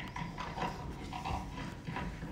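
Handling noise from a clip-on lapel microphone being fitted to a jacket: irregular small knocks and rustles.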